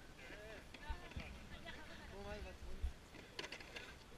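Untranscribed voices of people in the group talking and calling out, some high-pitched, with low bumps of wind or handling on the camera microphone.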